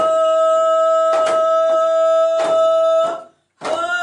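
A singing voice holds one long high note over a slow drum beat, about one stroke every second and a quarter. The note breaks off a little after three seconds in, and a new one starts just before the end.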